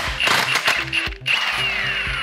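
Cordless impact wrench hammering on the reverse-thread clutch hub nut of a Harley-Davidson primary drive to break it loose: a fast rattle of impacts, then a whine falling in pitch as the motor winds down after the trigger is released, about a second and a half in.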